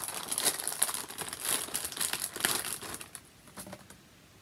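Crinkly packaging being handled and crumpled by hand as an item is unwrapped, a dense run of small crackles that dies away about three seconds in.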